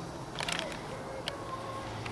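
Camcorder handling noise: a quick cluster of clicks about half a second in and a single click later, as the camera is swung and zoomed, over a low steady hum.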